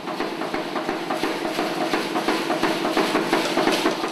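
Busy percussive sound: many quick, irregular hits over a dense, steady din.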